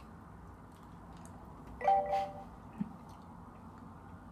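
Quiet room tone broken about two seconds in by a short chime of a few steady tones lasting about half a second, like a doorbell or an electronic notification, followed by a faint click.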